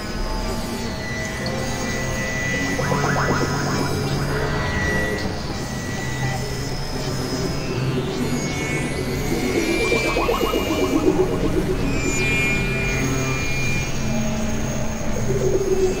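Experimental electronic synthesizer music: sustained low drones under steady high tones, with pulsing swells and a high pitch sweep that rises and falls about halfway through.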